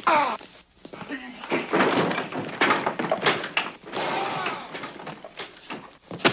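Two men fighting hand to hand, grunting and crying out with effort, with repeated thuds and knocks as bodies hit the couch and furniture.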